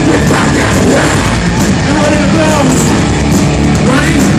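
A heavy metal band playing live and loud: distorted electric guitars, bass and a drum kit, with vocals shouted into a microphone over the top.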